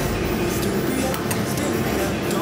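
Steady background din of a busy bar-restaurant: indistinct voices and room noise, with no sharp sounds standing out.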